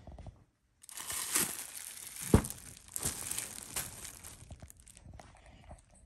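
Cellophane gift wrap crinkling and rustling as a wrapped gift is handled, with one sharp crackle a little past two seconds in; the rustling dies down about a second before the end.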